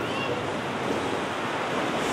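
Steady background hiss of room and microphone noise.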